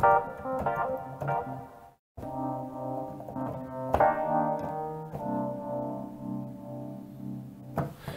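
Software keyboard instrument with a piano or electric-piano sound, played from a MIDI keyboard through a JBL Charge 3 portable speaker fed from a laptop's headphone output via the ASIO4ALL driver. First a run of short chords, then the sound cuts out briefly about two seconds in, then held chords, restruck about four seconds in, ring on and fade just before the end.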